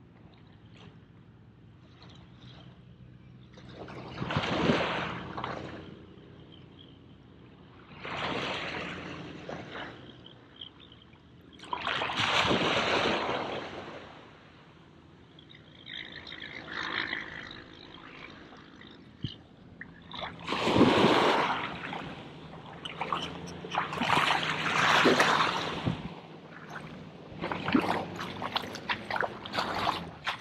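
Shallow salt water sloshing and washing in swells every few seconds, the loudest near the end.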